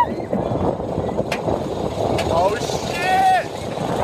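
Steel Dragon roller coaster train cresting the lift hill and starting over the top: a steady rumble of the ride and wind on the phone microphone, with two brief yells from riders in the second half.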